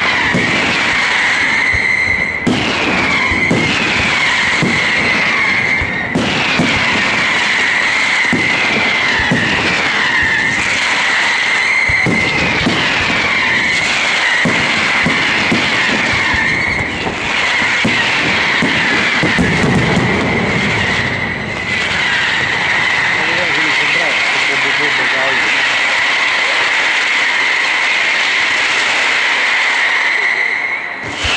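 Aerial fireworks going off continuously: a steady, high, wavering whistle from many whistling effects at once, under a run of bangs and crackles. The bangs thin out over the last several seconds while the whistling carries on.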